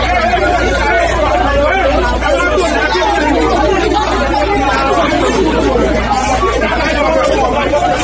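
A crowd of people talking and calling out at once, a steady babble of many overlapping voices, with a steady low hum underneath.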